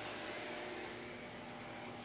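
Faint, steady whirring hiss with a low hum from the CB linear amplifier's cooling fan running on the bench.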